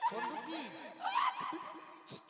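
People laughing: short chuckles, then a louder laugh that rises in pitch about a second in.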